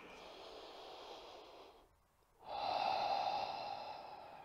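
A man's audible breathing while holding a yoga pose: a faint breath, a short silent pause about two seconds in, then a longer, louder breath that slowly fades.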